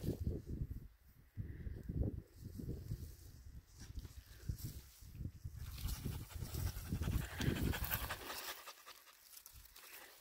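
Siberian husky panting close by, over a low, uneven rumble on the microphone.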